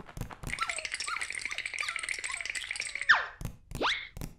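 Cartoon sound effects: a steady, rattling high whir lasting about two and a half seconds, then a quick falling whistle-like glide and a rising one near the end.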